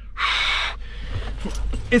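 A man blowing a long breath into his cupped fist to warm his freezing hands, one breathy puff lasting about half a second.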